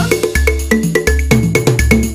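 Background music: an electronic track with a steady beat, a deep repeating bass line and short high synth notes.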